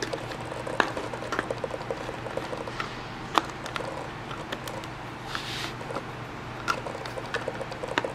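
Screwdriver backing out the small screws from the back cover of a SellEton SL-7515-C digital scale indicator: irregular light clicks and ticks, the sharpest a little under a second in and about three and a half seconds in.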